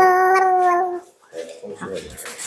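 A single long, steady cry held at one pitch for about a second, then softer short vocal sounds.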